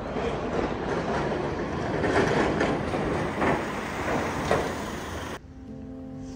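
A steady rushing street noise picked up by a handheld phone microphone while walking outdoors. It cuts off suddenly near the end, where soft piano music comes in.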